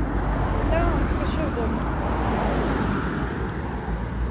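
Road traffic noise, a car passing that swells about two to three seconds in, over a steady low rumble; faint talk early on.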